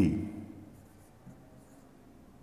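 Marker pen writing on a whiteboard: faint scratchy strokes.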